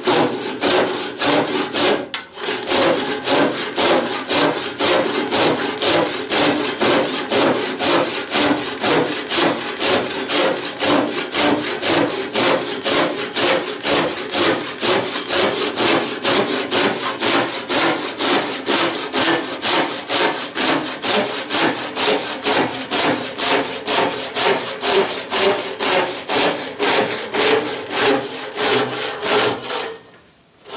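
Gyokucho ryoba Japanese pull saw cutting by hand through a thick block of exceptionally hard wood, in steady rasping strokes about two a second, with a short pause about two seconds in. The blade is a little dull.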